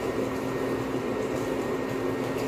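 Steady low hum of a running electric motor, with a thin steady whine above it.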